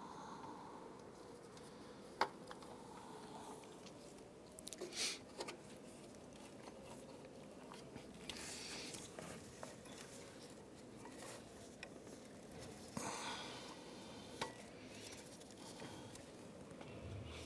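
Faint handling noises as a rubber serpentine belt is worked around the engine's pulleys by hand: scattered light clicks and knocks, one sharp click about two seconds in and a quick cluster of taps around five seconds, with rustling in between.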